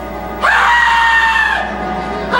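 A stage actor's long, high-pitched cry. It starts abruptly about half a second in, sweeps up and then holds for just over a second, with music playing underneath.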